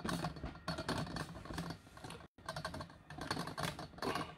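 A fast, irregular run of small clicks and taps. The sound cuts out completely for a split second a little past halfway.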